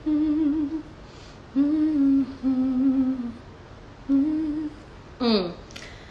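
A woman humming with closed lips: four short, fairly level low notes with pauses between, then one quick downward-sliding hum about five seconds in.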